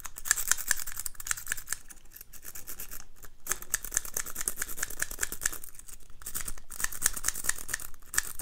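Sawtooth rake scrubbed rapidly in and out of the keyway of a 14-pin dimple padlock held under tension: fast, dense metallic clicking and scraping of the pick over the pins, with a few brief pauses. The lock does not open.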